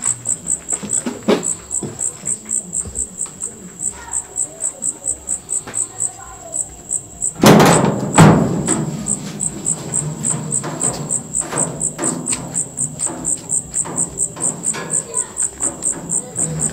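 Crickets chirping in a fast, even pulse of high chirps, about five a second, all through. About seven and a half seconds in come two loud thumps a moment apart, followed by a low hum under the chirps.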